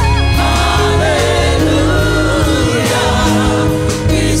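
Live church worship music: a band with many voices singing together.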